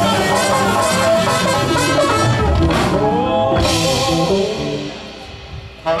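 Music with a singing voice, steady at first and then fading out near the end.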